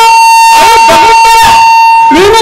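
A steady, high-pitched electronic tone held at one pitch throughout, with faint voices underneath.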